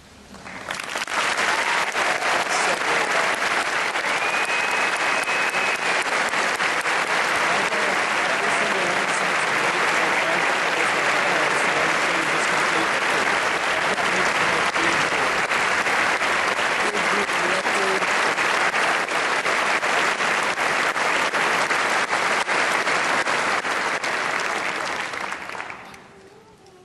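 Concert-hall audience applauding. The applause swells up about half a second in, holds steady, and dies away near the end.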